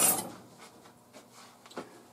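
Steel cleaning rod of an SVT-40 rifle being drawn out along its channel under the barrel: a brief metallic scrape at the start that fades within about half a second.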